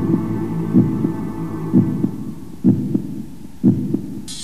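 Low, heavy thumps about once a second, like a heartbeat, over a low droning hum that thins out around halfway through.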